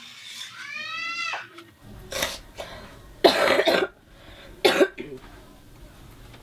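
A person coughing, three sudden coughs, the loudest and longest about three seconds in. A brief high-pitched arching vocal sound comes first, near the start.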